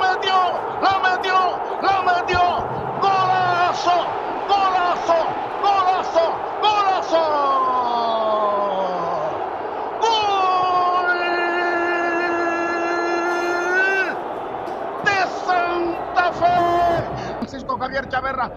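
Football commentator calling the play in rapid, excited Spanish, breaking into one long held shout of about four seconds that rises at its end: the goal call as the goal goes in, over crowd noise from the stadium.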